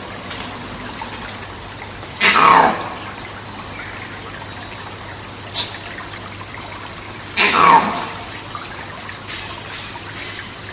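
Two monkey screams, each about half a second long and falling steeply in pitch, about five seconds apart, over a steady rushing hiss of rainforest background.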